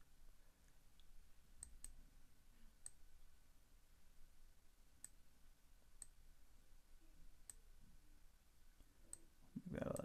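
Faint computer mouse clicks, about eight of them scattered over several seconds, against near silence.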